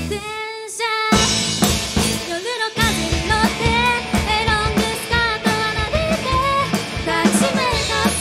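Live rock band with a female lead singer, electric guitars and a drum kit. For about the first second the band drops out and leaves the voice nearly alone, then a drum hit brings the full band back in under the singing.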